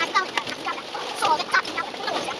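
On-board bus sound played back at four times speed: voices and running noise squeezed into fast, high-pitched, chirping chatter that sounds almost like clucking.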